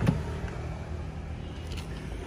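A car engine idling with a steady low hum, and a short knock at the very start.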